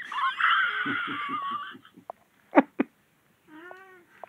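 Domestic cat meowing: a long, rough yowl in the first two seconds, then a short meow near the end. Two short clicks come in between.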